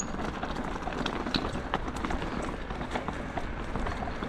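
Loose stones crunching and clicking in quick, irregular succession during fast movement along a stony dirt trail, over a steady low wind rumble on the microphone.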